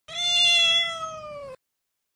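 A single long cat meow that drifts slightly down in pitch and cuts off suddenly about one and a half seconds in.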